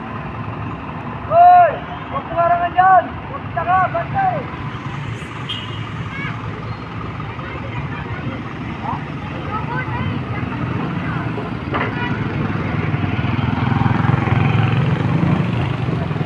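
Engines of trucks and other vehicles in a slow-moving parade, a steady low running noise that builds louder over the second half. About a second and a half in, a few short, loud high calls that rise and fall ring out over it.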